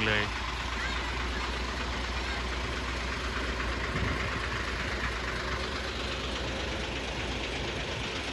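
Hino concrete mixer truck's diesel engine running steadily at idle, a low even rumble with no revving.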